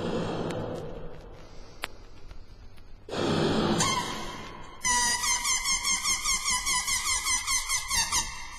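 Intro of a hard trance track: two long, breathy blowing sounds, then about five seconds in a squeaky, rubbery sound starts pulsing about four times a second.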